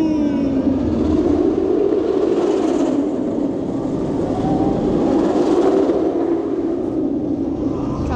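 Nemesis Inferno, a Bolliger & Mabillard inverted steel roller coaster, with its train running along the track overhead: a continuous rumbling roar with a low hum that falls slightly in pitch at the start, then holds steady.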